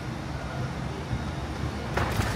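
Steady low rumble and hiss of a passenger boarding bridge, with no distinct knocks or steps standing out.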